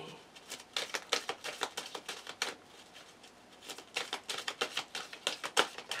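A deck of tarot cards being shuffled by hand: runs of quick papery clicks and slaps, easing off for about a second in the middle, then picking up again.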